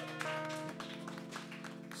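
Soft live band music of held, sustained chords, with a few light hand claps.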